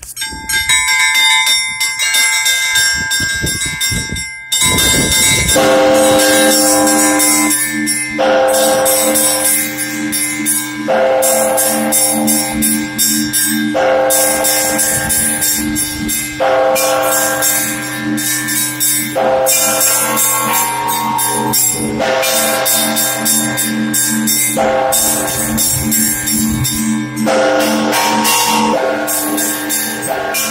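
Russian Orthodox church bells rung by one ringer pulling the clapper ropes: a few scattered strokes, then from about five seconds a full rhythmic peal, with small bells chiming fast over a heavier bell struck about every three seconds and the bells ringing on between strokes.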